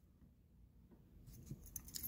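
Near silence, then faint light clicks of metal keys being handled in the fingers, starting about a second and a half in.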